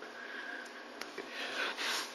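A person's quiet, tearful sniffing and breathing, with a soft breath in swelling near the end, over a faint hiss.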